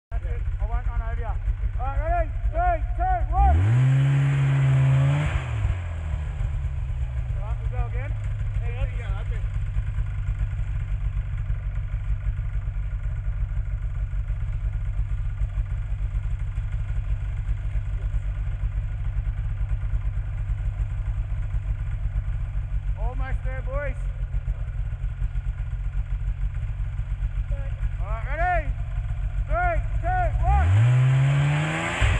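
Snowmobile engine running with a steady low pulse, revved hard about four seconds in and again at the end, with short throttle blips between. The sled is bogged in deep powder and its track is churning snow as riders try to drive it free.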